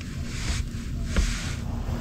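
Low, steady background noise with a faint click about a second in, as a 17 mm wrench is strained against an oil drain plug that is done up very tight.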